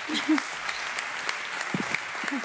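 Audience applause, a steady clatter of many hands clapping, with a brief voice sound or two over it.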